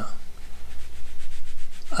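Soft rubbing of a paintbrush's bristles drawn across watercolour paper as dark strokes are laid on, over a steady low hum.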